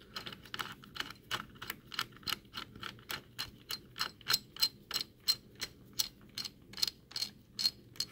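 Small hand screwdriver clicking steadily, about three sharp clicks a second, as it drives a laptop CPU heatsink screw down hand-tight.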